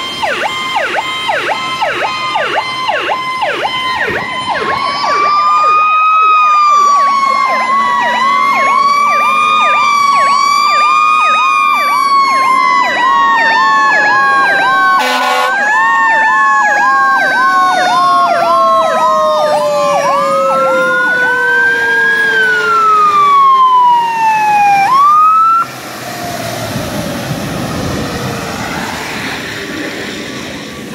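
Several fire apparatus sirens sounding together: a fast electronic yelp over slower wails that rise and fall, one long wail winding steadily down in pitch. Most of them shut off abruptly near the end as the units reach the scene.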